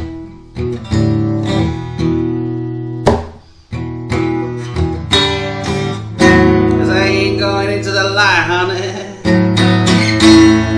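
Blues song played on acoustic guitar, with plucked notes and strums over held bass notes. A wavering melodic line comes in about halfway through.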